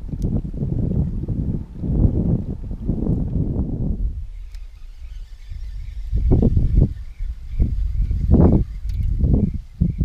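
Wind buffeting the microphone in irregular low gusts, easing briefly about four seconds in and then swelling again. From then on a faint, steady high whine pulses about three times a second underneath.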